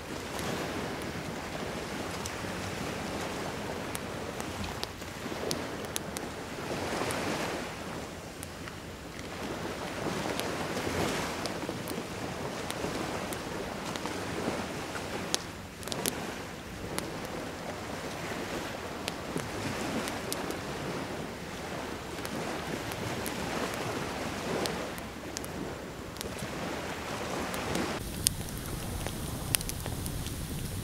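Surf washing onto a beach in slow swells every few seconds, with wind, and scattered sharp pops from a campfire. About two seconds before the end the sound changes to the nearer hiss and crackle of the burning fire.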